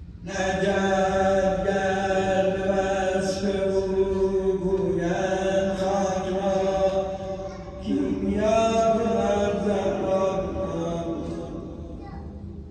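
A man's voice chanting a religious recitation in two long, drawn-out melodic phrases, with a short breath between them about eight seconds in.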